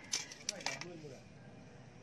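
A faint voice and a few light clicks in the first second, then only low background noise.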